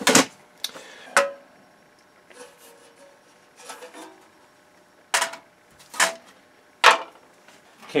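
Workbench handling noise: about five sharp knocks and clacks as a chassis and circuit-board panels are picked up and set down, with faint rustling and scraping between them.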